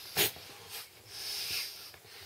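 Breath sounds of a person blowing up a vinyl air mat by mouth: a short, sharp breath near the start, then a longer breathy rush of about a second.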